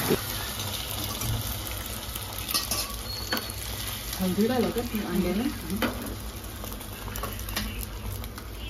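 Beaten egg with chopped onion frying in a small cast-iron pan on a gas burner: a steady sizzle, with a few light clicks.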